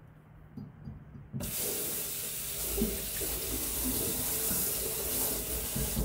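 Kitchen tap turned on about a second and a half in, after a couple of light knocks: water runs steadily from the tap onto a plastic colander and into a stainless steel sink.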